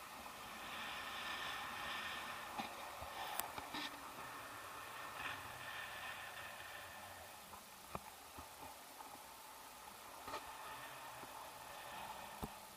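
Faint steady rush of air past the camera during a tandem paraglider flight, with a few sharp clicks from the harness or camera mount.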